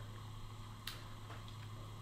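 Quiet room tone with a steady low hum, broken by one faint click a little under a second in.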